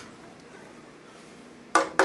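Cream sauce simmering quietly in a metal skillet, then near the end two sharp knocks of a spatula against the pan, a quarter second apart, with a brief metallic ring.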